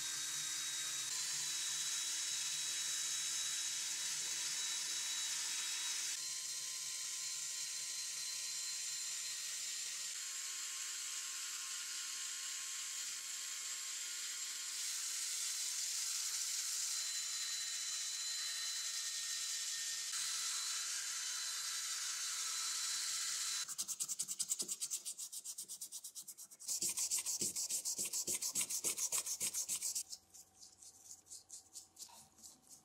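A brass wire wheel spinning in a handheld drill scrubs rust and grime off cast-iron lathe parts: a steady high scratching over a faint motor whine, its tone shifting each time the wheel is moved or pressed harder. Near the end this gives way to rapid, regular scratching strokes.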